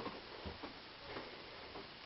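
Faint, irregular ticks and clicks, roughly half a second apart, over a low steady hiss.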